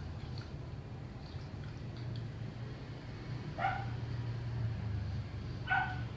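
A small dog yapping, two short yaps a couple of seconds apart, over a steady low hum.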